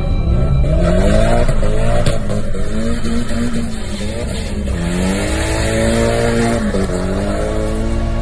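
Car engine revving, its pitch climbing and falling several times, with a long hold of high revs about five seconds in that drops off near the end, over a continuous hiss of tyre squeal.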